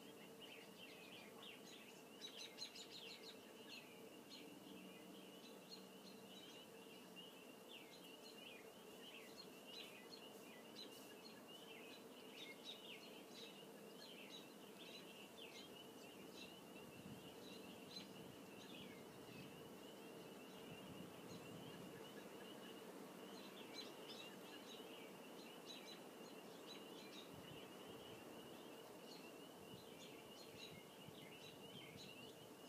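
Near silence: faint room tone with a low steady hum, and faint high chirping of birds that goes on throughout.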